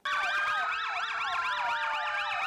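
Several vehicle sirens wailing at once in fast overlapping up-and-down sweeps, over steady held tones and one long, slowly falling tone. They are sounded for the one-minute silence in memory of the fallen.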